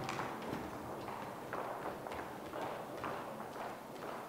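Footsteps of a group of people walking down choir risers and across a stage: irregular hard-soled knocks, a few a second.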